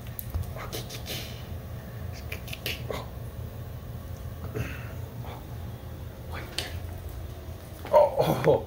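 Kittens playing on a hard floor: scattered short clicks, taps and scuffles from paws and bodies scrambling, over a steady low hum.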